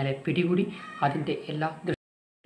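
A man speaking in a low voice, with some syllables drawn out. It stops abruptly just before the end.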